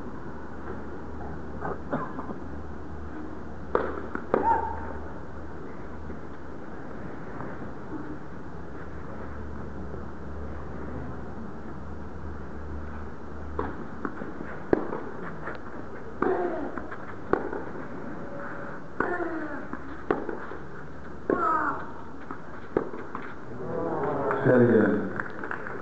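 Tennis ball struck by rackets in a rally, sharp knocks about every second from about halfway in, some followed by a short falling vocal sound, over a steady arena hum and crowd murmur. A few scattered knocks come earlier.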